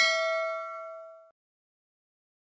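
Bell 'ding' sound effect for a subscribe-button notification bell: a single struck chime that rings and fades out within about a second and a half.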